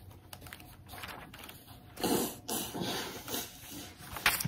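Quiet clicks and light rustling of something being handled close to the microphone, with a couple of louder, softer sounds from about halfway through.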